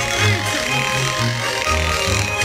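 Chlefeli, small wooden clappers held between the fingers, rattling a fast, dense rhythm in Swiss Ländler music, over a double bass line with Schwyzerörgeli button accordions quieter behind.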